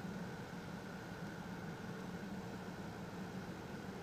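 A car engine idling steadily, heard from inside a stationary Buick as a low, even hum.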